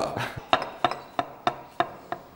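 A kitchen knife slicing button mushrooms on a wooden cutting board: a steady run of short, sharp knocks, about three a second, as the blade meets the board.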